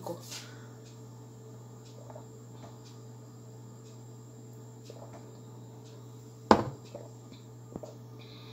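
Quiet room tone with a steady low hum and a few faint small sounds. It is broken by one sharp knock about six and a half seconds in and a lighter click just before the end.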